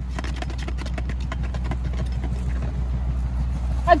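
Plastic water bottle spinning on an upturned plastic tub lid: a quick, irregular run of small clicks and rattles over a steady low rumble.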